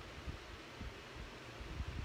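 Quiet room noise with a few faint, short low bumps, the kind of handling knocks made when a phone or desk is touched.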